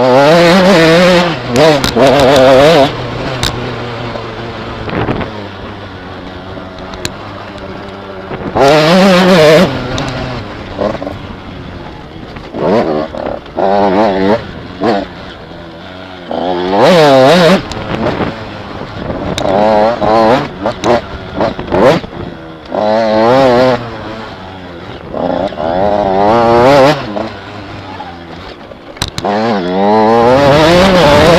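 Mini enduro motorcycle engine heard from the rider's helmet, revving up hard in repeated bursts of throttle with a rising pitch and dropping back to a lower, quieter note between them, about eight times.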